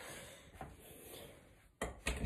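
Soft, steady rubbing noise from a handheld phone being handled and carried, with a sharp knock near the end.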